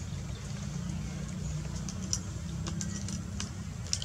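Steady low outdoor rumble with a few faint, sharp clicks scattered through it, the sharpest near the end.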